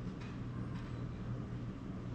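Steady low hum of room tone.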